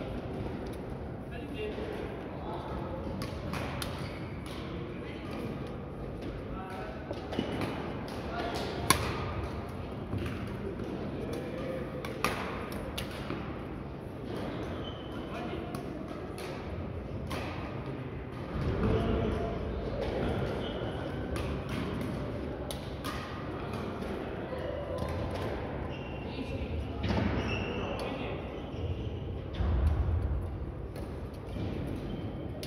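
Badminton rackets hitting shuttlecocks from several courts at once, sharp cracks at irregular intervals, the loudest about nine seconds in, echoing in a large sports hall over indistinct voices.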